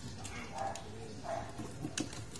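A restrained dog making two short, faint whines.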